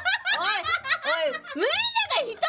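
Women laughing and giggling in high voices, mixed with quick excited talk.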